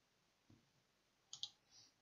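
Faint computer mouse clicks over near silence: a soft low thump about half a second in, then a quick pair of clicks and a softer one just after.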